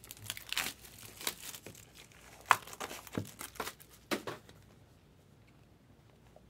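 Crinkling and rustling of card packaging being handled and opened, with scattered sharp clicks and taps; it dies down about four and a half seconds in.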